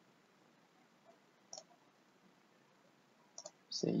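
Computer mouse clicks over faint room tone: a single click about one and a half seconds in and a quick pair of clicks near the end.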